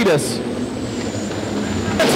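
Engines of small open-wheel midget race cars running on the track: a steady engine drone with a faint thin high whine over it.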